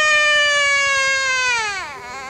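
A toddler wailing in one long held cry that slides slowly down in pitch, then drops away sharply near the end.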